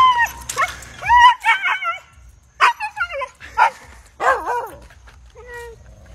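Husky vocalising in a run of short, wavering yips and whines, the pitch bending up and down from call to call, with brief pauses between them.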